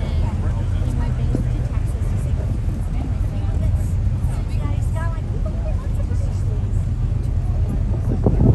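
A motor boat's engine running steadily underway, a constant low drone, with faint conversation over it.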